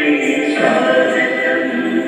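Dance song with a chorus of voices singing together, moving to a new phrase about half a second in.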